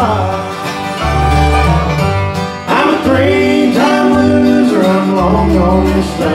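Live bluegrass band playing acoustic guitar, banjo, fiddle and upright bass, with sliding, held melody notes over a steady bass line.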